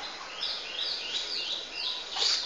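A small bird chirping: a quick run of repeated high, sharp chirps, about three a second, starting about half a second in.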